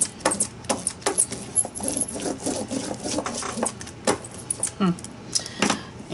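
A hand brayer rolled back and forth over a paper tag, spreading colour-shift acrylic paint, with a run of irregular clicks and rattles as it goes.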